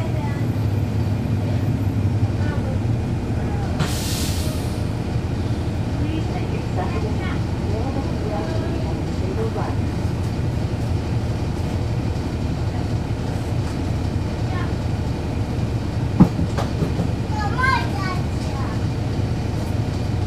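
Cummins ISL9 diesel engine of a 2011 NABI 40-SFW transit bus running with a steady low rumble, heard from inside the bus. There is a short burst of hiss about four seconds in and a single sharp click, the loudest sound, near the end.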